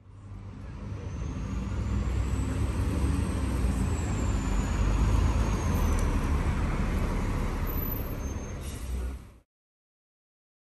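Alexander Dennis Enviro400 double-decker bus pulling in to a stop, its diesel engine running with a low rumble that grows louder as it approaches. A thin whine rises in pitch, then falls, and a short air-brake hiss comes near the end before the sound cuts off suddenly.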